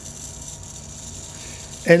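Faint, steady whir of a spinning toy gyroscope balanced on a taut string.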